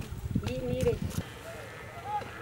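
Livestock bleating: a few drawn-out, slightly wavering calls, with some light clicks in between.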